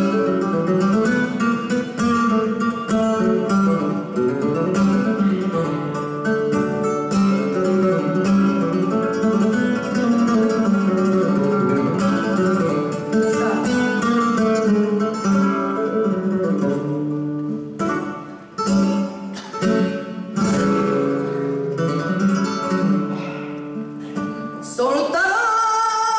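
Flamenco guitar playing solo: picked phrases and sharp chord strokes, with a stretch of hard strokes and short breaks near the end.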